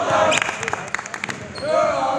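A basketball being dribbled on a hardwood gym floor in quick repeated bounces, with sneakers squeaking as players run and voices in the background.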